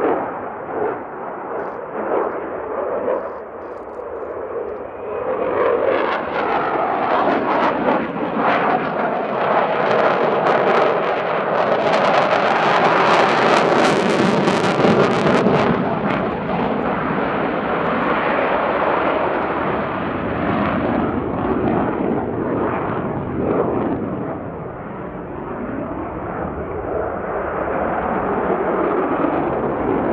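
Twin General Electric F404 turbofans of an F/A-18C Hornet jet fighter roaring overhead in a display flight. The roar builds to its loudest in the middle with a harsh crackle, eases off, then swells again near the end.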